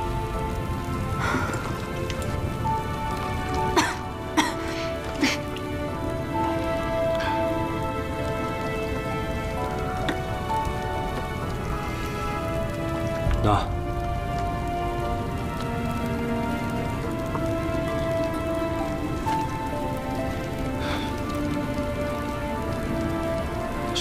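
A wood campfire crackling, with a few sharper pops at about four to five seconds in and again about halfway through, under soft background music of long held notes.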